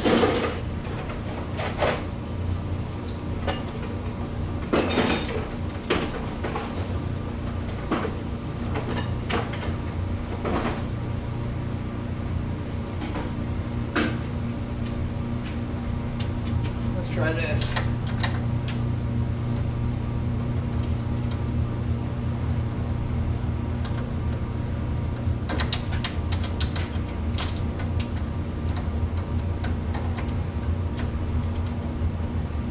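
A steady low mechanical hum, with scattered knocks and clicks of handling and tools.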